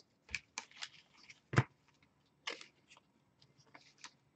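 Trading cards handled and sorted by hand: scattered soft clicks and rustles as cards slide and tap against each other, the loudest about one and a half seconds in.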